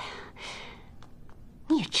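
A breathy sigh, then a woman starts speaking near the end.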